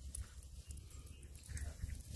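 Faint sounds of a pug playing roughly with miniature dachshund puppies on grass, with small scuffles and a few soft noises near the end, over a low steady rumble.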